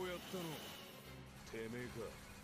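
Quiet dialogue from the anime episode, a man's voice speaking a short line and then another brief phrase, over a steady, low background music drone.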